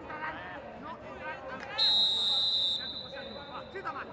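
Referee's whistle blown once about two seconds in, a shrill blast of about a second, signalling a foul in the penalty area and the award of a penalty. Voices call out around it.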